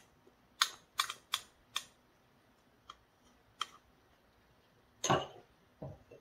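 Wooden spoon clicking and tapping against a small ceramic dish and the rim of a plastic mixing bowl while scraping the dish out: a handful of sharp, separate clicks, then a louder knock about five seconds in.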